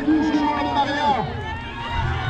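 A man's voice over a public-address loudspeaker, too indistinct to make out: the race announcer commentating.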